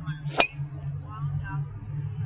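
A single sharp, ringing crack about half a second in as the head of a CorteX 9-degree driver strikes a golf ball on a full swing.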